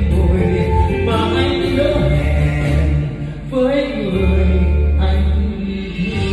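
Karaoke music played through a home karaoke system: held melody notes over a strong, steady bass, with a short lull a little past the middle.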